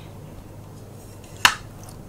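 A single sharp click about one and a half seconds in.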